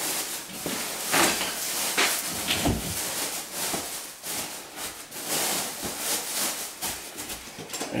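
Irregular knocks, scrapes and rustling from hand work at the bottom of a basement wall.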